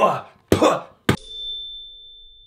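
A short burst of voice, then about a second in a single sharp ding: a struck, bell-like hit that leaves one high ringing tone fading away over about two seconds.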